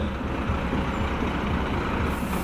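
Diesel engine of a Renault fire-service water tanker truck running steadily as the truck drives slowly past close by.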